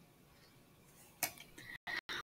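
A quiet pause with a few faint, short clicks or clinks in the second half.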